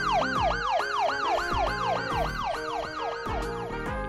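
A police siren sound effect in a fast yelp, its pitch sweeping up and down about five times a second, fading out after about three and a half seconds. Light background music plays under it.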